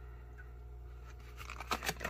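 A steady low hum and quiet room tone, then, in the last half second or so, a few light clicks and rustles as a cardboard MRE entree box is handled.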